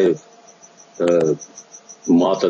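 A short pause in a man's speech heard over a video-call link, broken by one brief spoken syllable about a second in. Under it runs a faint, high-pitched, rapidly pulsing hiss.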